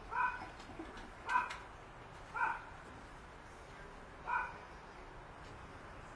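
A young puppy barking: four short, high-pitched barks roughly a second apart, the last after a longer pause.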